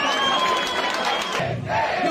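A packed crowd at a rap battle shouting and cheering, with one long yell held over it for about a second and a half.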